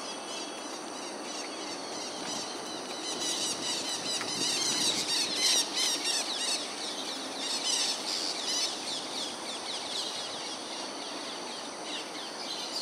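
Many birds chirping in quick, high, repeated notes, busiest from about three to nine seconds in, over a steady low background hum.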